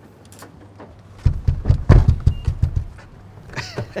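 Car door being shut: a quick run of heavy thumps and knocks lasting about a second and a half, the loudest near the middle.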